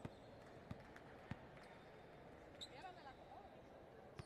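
Faint indoor-court sounds: a volleyball bouncing on the hard court floor three times, about two-thirds of a second apart, then a few short squeaks of athletic shoes on the floor.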